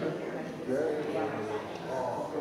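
Indistinct speech: people talking, with no words clear enough to make out.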